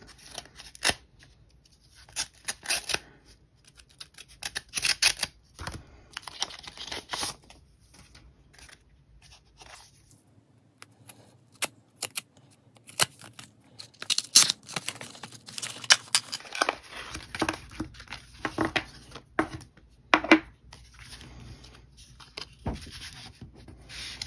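A paper mail envelope sealed with washi tape being slit with a craft knife and torn open, then the taped paper packaging inside pulled apart: irregular bursts of paper tearing and rustling with small sharp taps.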